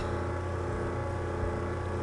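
Steady low electrical hum with a stack of even overtones, the constant background noise under the recording.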